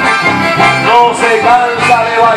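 Live folk band playing a Latin American tune: two accordions carry the melody over strummed guitars and an electric bass line.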